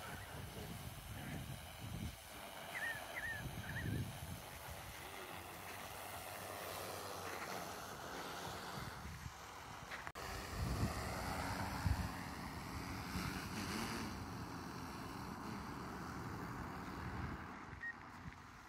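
DJI Matrice 300 quadcopter's rotors humming in flight, their pitch rising and falling as it manoeuvres, with wind buffeting the microphone in gusts.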